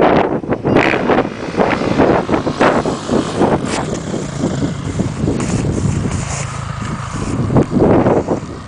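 Dirt bike engine running and revving in surges, with wind buffeting the microphone.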